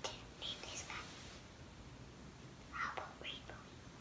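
A young child whispering a few words in two short phrases.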